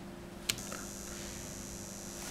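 A click as the RETOM-21 relay test set switches on its output, then a faint steady electrical hum with a thin high whine as the test set drives about 68 A through the AP50 circuit breaker.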